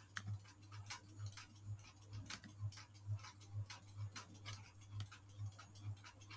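Faint, regular ticking at a little over two ticks a second over a low steady hum.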